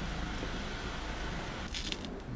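Steady low background rumble, with a brief rustle or scuff near the end.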